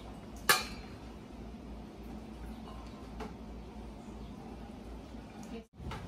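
A sharp clink about half a second in as chopped onions are scraped off a plate into a stainless steel mixing bowl, then a faint tap about three seconds in, over a low steady room hum.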